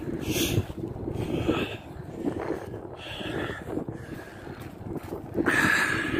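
Wind rushing over the phone's microphone, with the rolling hiss of inline skate wheels on wet asphalt underneath; it swells louder near the end.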